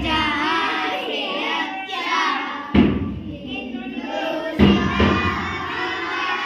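Children singing, with a deep thump a little under three seconds in and another just before five seconds.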